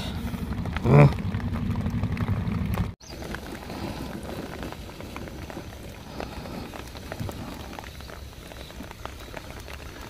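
Steady rain falling, an even pattering hiss. For the first three seconds a low steady hum and a brief voice lie under it; then the sound cuts off abruptly and only the rain goes on.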